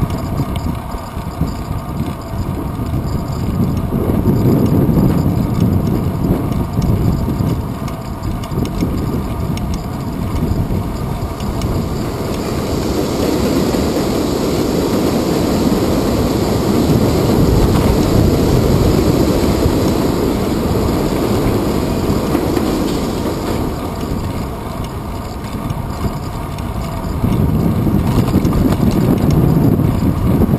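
Wind buffeting and road rumble picked up by a handlebar-mounted action camera on a moving bicycle, a steady noise that swells and eases several times, with the hiss spreading higher through the middle as if a vehicle passes or the bike speeds up.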